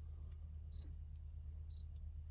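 A Canon DSLR's focus-confirmation beep sounds twice, short and faint, about a second apart, as the shutter button is half-pressed. The Dandelion chip on the M42 adapter is telling the camera that the manual lens is in focus.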